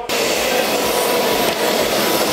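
Loud, steady rushing noise with no rhythm, starting abruptly, from outside through the open terminal doors.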